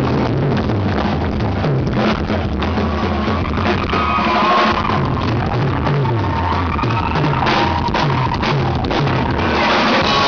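Live country-rock band playing an instrumental jam: fiddle lead over electric guitar, bass and drum kit.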